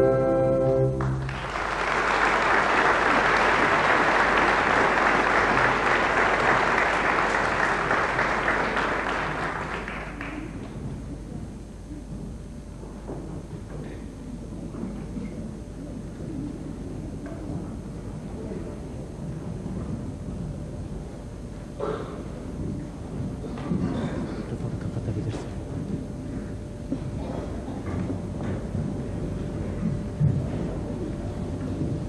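An orchestral chord ends about a second in and audience applause breaks out, lasting about eight seconds before dying away. The hall then settles to a low background rumble with a few scattered knocks.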